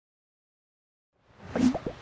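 Dead silence for over a second, then the start of an animated logo sting: a few quick, bubbly plop sound effects.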